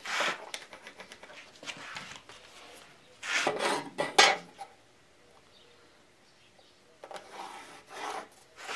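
A pencil scratching along a metal square and steel rules knocking and sliding on a wooden board. The loudest clatter and scraping comes about three to four seconds in, and there is more scraping near the end.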